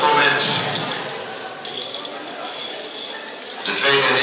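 Indistinct talking of people close by, loudest in the first second, then a quieter murmur of voices.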